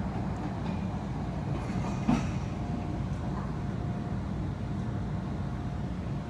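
Low, steady rumbling noise of a sampled field recording, with a single click about two seconds in and a faint steady tone from about halfway on.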